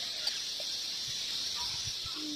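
Steady high-pitched chorus of insects, such as cicadas or crickets, from the surrounding tropical trees.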